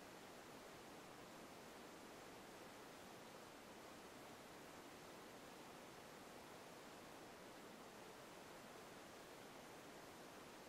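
Near silence: a faint, steady background hiss with nothing else happening.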